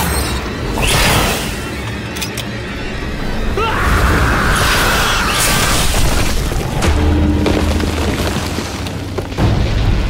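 Monster-movie action soundtrack: dramatic music layered with heavy booms and crashing effects as a giant snake attacks.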